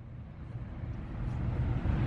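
Low, steady rumble like a motor vehicle's engine, slowly growing louder.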